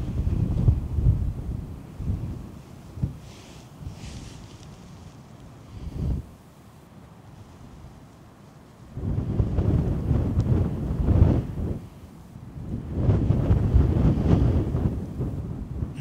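Wind buffeting the microphone in gusts: a low rumble that swells and drops, with a strong gust at the start, a short one about six seconds in, and two long, heavy gusts in the second half.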